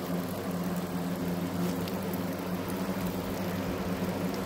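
A steady low mechanical hum over an even hiss, holding one pitch throughout.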